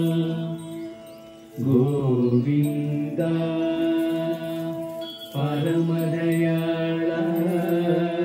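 Devotional mantra chanting: a voice sings long held notes, with a new phrase beginning about a second and a half in and again past five seconds.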